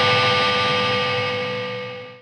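Distorted electric guitar chord left to ring, slowly fading out.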